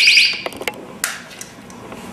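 Personal alarm's rapidly pulsing high shriek stops a moment in, followed by a few short clicks and knocks, one louder knock about a second in.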